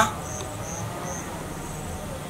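An insect chirping: about three short, high chirps roughly half a second apart, over a steady low background hum.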